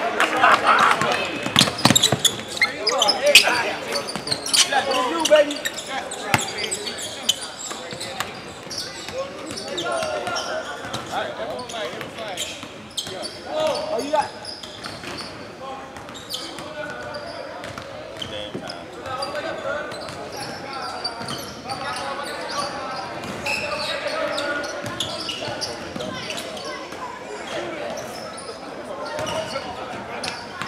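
Basketball bouncing on a hardwood gym floor with the short sharp strikes of play, under voices of players and spectators, echoing in a large gym. Loudest in the first few seconds.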